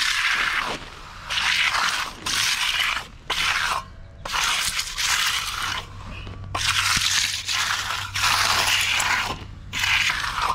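Steel hand trowel scraping over a concrete slab in repeated long strokes, about one a second. This is a finishing pass on partly set concrete, three hours after the pour.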